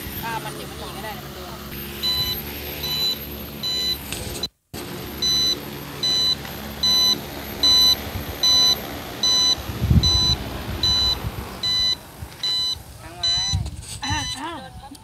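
An agricultural spray drone system's warning beeper sounds a high electronic beep about one and a half times a second, starting about two seconds in. Under it runs the steady hum of the drone's rotors.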